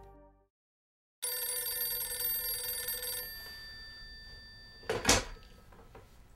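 A corded landline telephone rings once for about two seconds, the ring dying away over the next second or so. About five seconds in comes a loud clunk, the handset being picked up.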